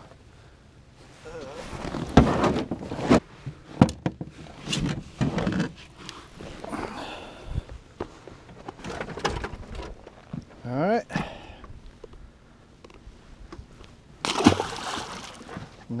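Irregular knocks and clunks of gear being handled in an aluminum jon boat, with water sloshing against the hull. A short rising vocal sound comes about eleven seconds in.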